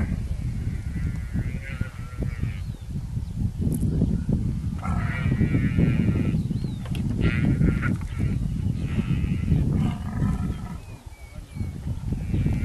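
Wild animals calling: short, high, wavering cries in about five bouts, over a steady low rumble.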